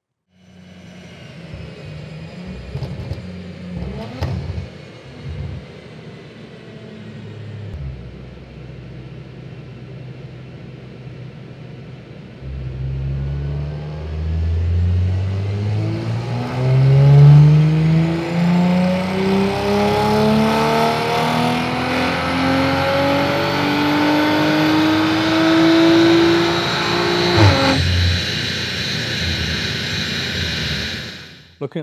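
Audi RS4 B9's 2.9-litre twin-turbo V6, Stage 2 tuned with Milltek downpipes with race cats and a full Milltek exhaust, on a chassis dyno. It runs low and steady for about twelve seconds, then makes a full-throttle pull with the pitch rising steadily for about fifteen seconds. It cuts off suddenly near the end with a sharp crack as the throttle closes.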